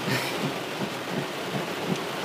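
Heavy rain beating steadily on a car's roof and windshield, heard from inside the car.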